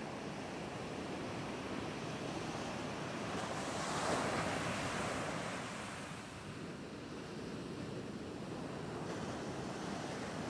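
Ocean surf: breaking waves and whitewater washing in a continuous roar that swells louder about four seconds in, then eases.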